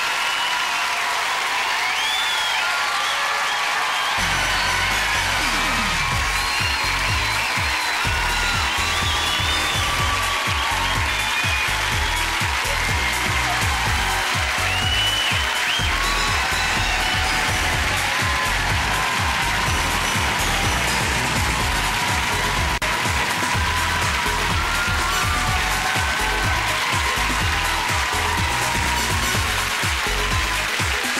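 Studio audience applauding and cheering, with high whoops and shouts over the clapping. From about four seconds in, music with a steady, heavy bass beat plays under the applause.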